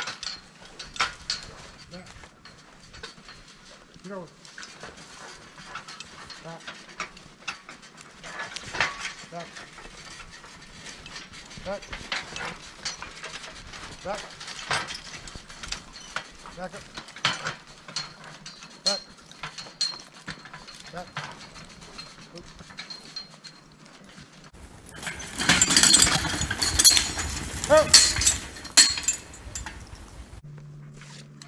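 Draft horse team in harness pulling a wheeled logging forecart through snowy brush: irregular clinks and knocks of harness and cart, with twigs and brush crackling. Near the end comes a louder burst of rustling and crackling lasting a few seconds.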